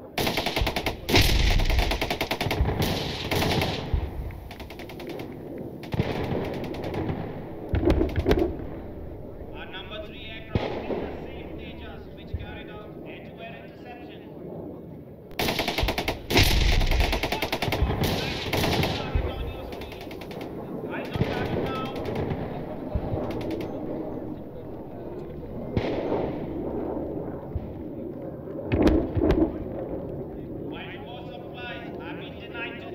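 Weapons detonating on a bombing range in rapid strings of sharp blasts with a deep rumble. The firing starts suddenly at the very beginning and is loudest about a second in and again about sixteen seconds in, with a shorter burst near the end.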